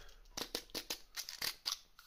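Small clear plastic drill-bit cases handled between the fingers: a quick series of about ten light plastic clicks and rustles.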